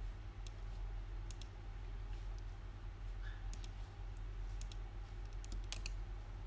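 Computer mouse clicking: about a dozen short sharp clicks, scattered and several in quick pairs, over a steady low electrical hum.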